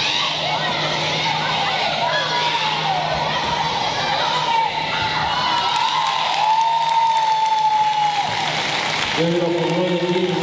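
Crowd cheering and shouting, with whoops and many voices overlapping and one long drawn-out yell in the latter half. A steady, held chord-like sound comes in near the end.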